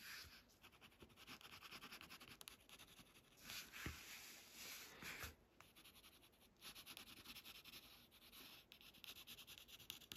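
Faint scratching of a graphite pencil shading on a paper tile, in quick short strokes.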